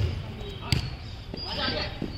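A football kicked with a sharp thud, then a second thud of the ball less than a second later. Players' voices follow.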